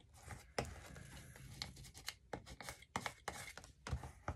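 Faint paper handling: a sheet of paper rubbed and pressed down on a glue-book page, with scattered light taps and short rustles.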